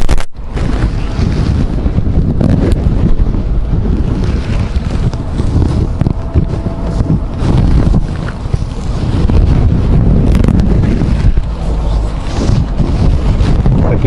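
Wind buffeting the microphone over the low rumble of a slowly moving vehicle, with a brief dropout just after the start.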